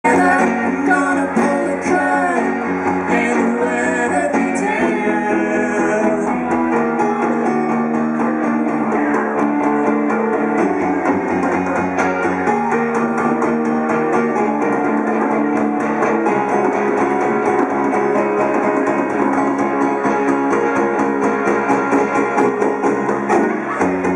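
A band playing a song live: strummed guitar and a singing voice over djembe hand drumming, the chords changing every few seconds.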